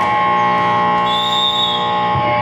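Basketball game buzzer sounding one long, steady, buzzy tone at a fixed pitch, lasting a little under three seconds.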